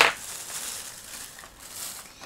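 Handling noise from a blister-packed toy car and the camera: a sharp plastic crackle at the start, then soft rustling and crinkling.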